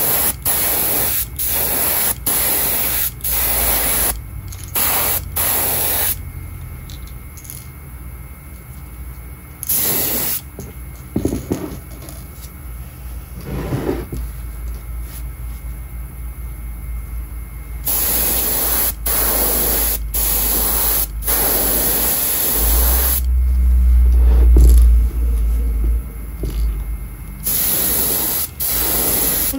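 Airbrush spraying paint in short bursts, about two a second for the first few seconds, then a couple of lone bursts and longer passes with brief breaks. A low rumble runs under it, loudest a few seconds before the end.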